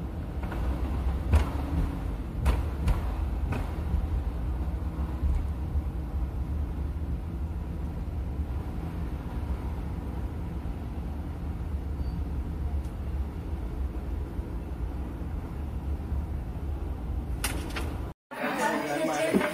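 Steady low road and engine rumble of a car driving in freeway traffic, heard inside the cabin, with a few short knocks in the first few seconds and one near the end.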